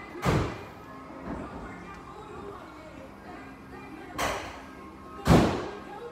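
Three short, loud thuds, the first just after the start and two close together near the end, the last the loudest, over faint background music and voices.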